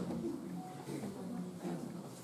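Low, indistinct murmur of voices, with no clear words.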